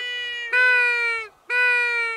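A duck call blown close to the microphone in long, drawn-out nasal notes, about one a second, each dipping slightly at its end: calling to ducks circling overhead.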